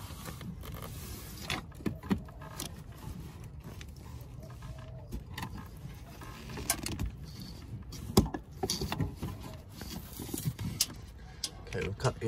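Handling noise of a hand working side cutters in among engine-bay wiring and plastic conduit: rustling with scattered clicks and knocks, and one sharp click about eight seconds in.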